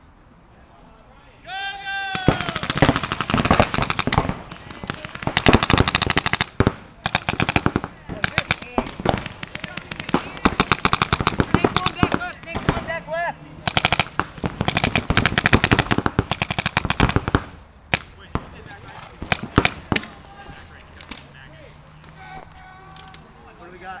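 Several paintball markers firing in rapid, overlapping volleys, beginning about two seconds in. The volleys stop about three-quarters of the way through, leaving a few scattered single shots and players calling out.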